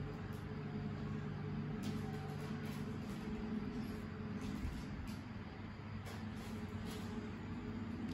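Steady low background hum with a few faint clicks.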